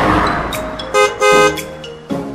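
Cartoon sound effect of a van horn tooting twice about a second in, the second toot longer, after a fading rush of passing-vehicle noise, with a few light sparkle clicks around the toots.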